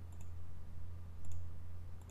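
Two faint computer mouse clicks about a second apart, over a steady low hum.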